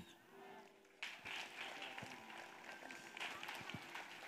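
Faint background murmur of voices with a few soft knocks from a handheld microphone as it is passed from one person to the next. The first second is almost silent.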